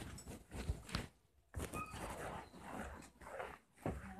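Handling noise: a phone's microphone rubbing and knocking against hoodie fabric, irregular scuffs with two short lulls.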